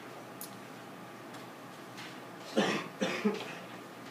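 A person coughs twice in quick succession, about two and a half seconds in, over the quiet hum of a room.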